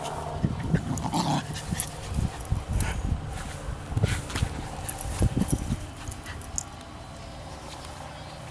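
Scottish terrier and Sealyham terrier playing tug of war, giving a run of short dog sounds in irregular bursts that die away about six seconds in.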